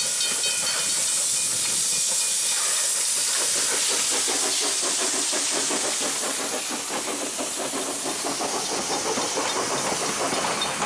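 Steam locomotive passing with a steady hiss of steam, giving way after a few seconds to the rattling clatter of its train of carriages rolling by on the track.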